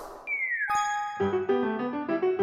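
Sound effect for a pop-up message box: a short falling tone, then a bright chime ding a little under a second in. Light background music with a clear melody and bass line starts about a second in.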